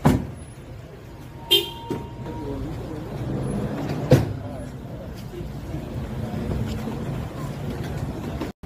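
Background voices and vehicle noise, with a sharp knock at the start and another about four seconds in, and a short horn toot about a second and a half in.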